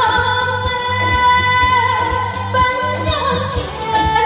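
A woman singing live into a handheld microphone, holding long high notes over backing music with a steady bass beat.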